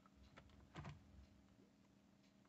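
Faint plastic clicks from a Volvo truck's gear selector lever being moved by hand, the clearest a little under a second in; otherwise near silence.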